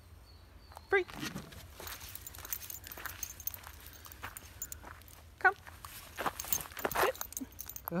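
Irregular footsteps on a gravel path, a person and a dog moving about.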